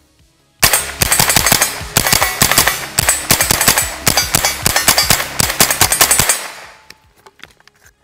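Smith & Wesson M&P 15-22 .22 LR rifle firing a long, rapid string of semi-automatic shots, several a second, starting about half a second in and stopping about six seconds in.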